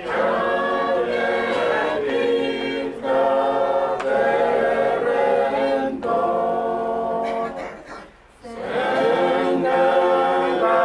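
Unaccompanied church choir singing a hymn in Pohnpeian, in long held phrases that break about every three seconds, with a short pause for breath a little after eight seconds.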